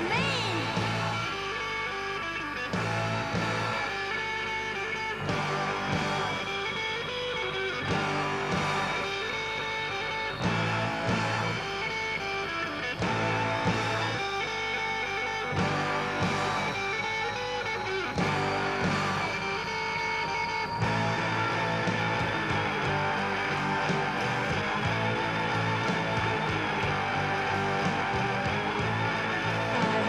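Rock band playing an instrumental stretch with no vocals: electric guitars over drums, the chord pattern repeating about every two and a half seconds, then shifting to a steadier strummed section about two-thirds of the way through.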